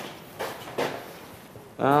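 Faint handling sounds, a couple of light knocks, as a hand touches the muzzle of a painted wooden prop cannon.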